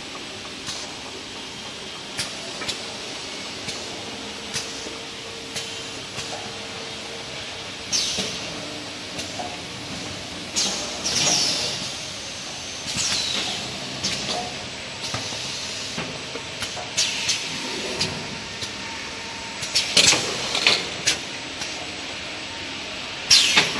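Toilet-paper roll bundle wrapping machine running: a steady mechanical hum with sharp clicks about once a second, and several short hisses of compressed air from its pneumatic cylinders in the second half.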